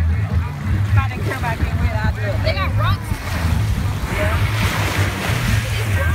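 Shallow sea water washing and splashing around wading legs at the shoreline, with a louder hissing wash of water about four seconds in. Other people's voices and a steady low rumble run underneath.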